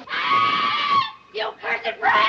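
A woman's high, shrill cry held for about a second, then a few quick spoken words: a film witch crying out as a bucket of water hits her.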